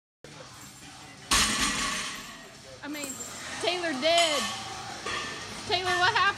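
A sudden loud crash about a second in, typical of a loaded barbell being dropped onto a gym floor, with a short ringing tail. It is followed by voices that rise and fall sharply in pitch, like yelps or laughter.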